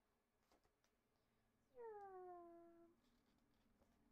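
One drawn-out animal call, about a second long, sliding down in pitch.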